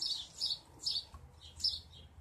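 A small bird chirping: four short, high-pitched chirps less than a second apart.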